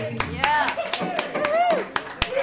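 Scattered hand claps, about four or five a second, mixed with voices, as a live blues band's last notes die away in the first half-second.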